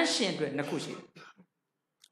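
Only speech: a man's voice speaking into a handheld microphone for about a second, then a pause.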